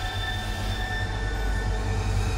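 Horror-trailer sound design: a sustained, screeching metallic drone of several held high tones over a deep, steady rumble.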